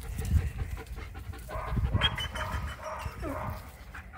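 A wolfdog panting, with a few short higher sounds partway through.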